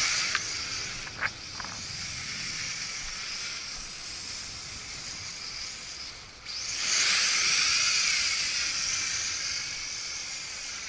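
Small quadcopter drone flying overhead: its motors and propellers whine high, the pitch wavering up and down with the throttle. The sound dips briefly a little after six seconds in, then comes back louder.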